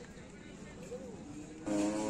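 Livestock market background: a low murmur with faint distant voices, until a loud nearby voice cuts in near the end.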